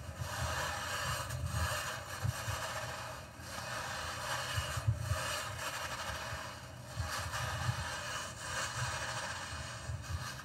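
Two-man Roman-style frame saw drawn back and forth through a marble block with sand and water: a rhythmic grinding scrape that swells and fades with each stroke, about one stroke every second and a half, with low knocks from the wooden frame.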